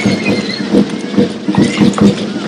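Rhythmic wooden knocking for a Pacific island stick dance, about two strikes a second, over a steady low hum.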